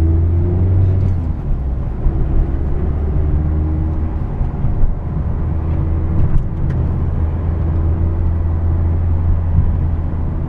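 Engine and road noise of a 2017 Mazda Miata RF, heard from inside the cabin, with its 2.0-litre four-cylinder running at a steady low drone as the car cruises.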